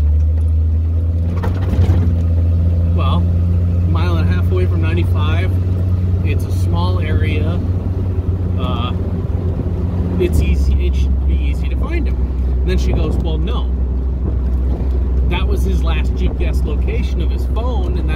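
Jeep engine running with a steady low drone heard inside the cab, its pitch dropping a step about ten seconds in; a voice talks over it.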